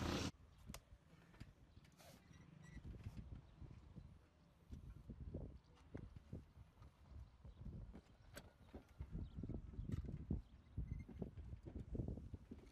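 A louder noise cuts off abruptly in the first moment, leaving faint, irregular low knocks and thumps with a few sharp clicks: a worker moving about and handling his climbing chain.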